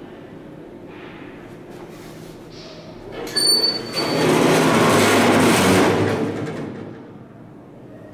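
Doors of an old Thyssen inclined elevator sliding shut. A steady low hum gives way, about three seconds in, to a short high tone, then a loud noisy rumble that lasts about three seconds before it fades. The elevator is in very bad shape.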